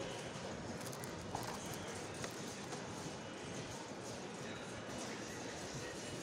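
Steady background noise of a supermarket, with a few faint clicks and knocks.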